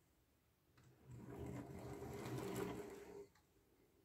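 1/50-scale diecast Scania truck and multi-axle trailer rolled by hand across a wooden tabletop: a faint, steady rolling rumble of its many small wheels, lasting about two seconds and stopping a little after the middle.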